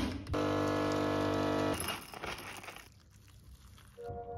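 Delta Q capsule coffee machine's pump buzzing steadily for about a second and a half, then cutting off, followed by softer fading noise.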